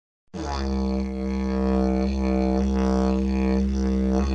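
Didgeridoo playing one steady low drone, its tone shifting in slow sweeps, starting a moment in.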